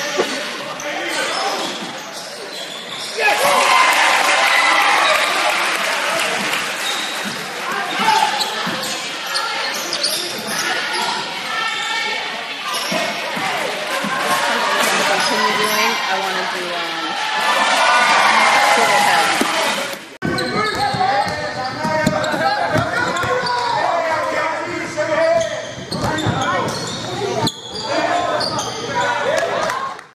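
Basketball being dribbled and bounced on a gym floor during live play, with shouting voices from players and spectators echoing in a large gymnasium. The sound changes abruptly about two-thirds of the way through, where the footage cuts to another game.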